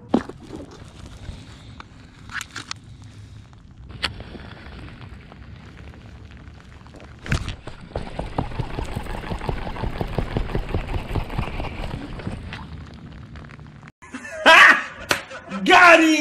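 Baitcasting reel being cranked, a dense run of fine clicks from the reel as a crankbait is retrieved, with a single knock a little before it. Near the end the sound cuts abruptly to a man laughing and talking loudly.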